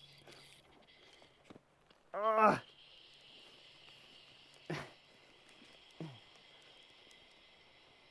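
A man's short, falling laugh or exclamation about two seconds in, with two briefer sounds from him later, while fighting a strong trout on a fly rod. A steady high hiss sets in just after the laugh and carries on.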